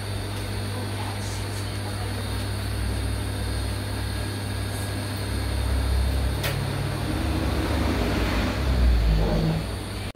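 Brother industrial sewing machine running: a steady motor hum, with louder stretches of stitching about halfway through and again near the end.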